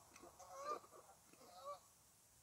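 A few faint, short honking bird calls, the clearest about two-thirds of a second and again near the end.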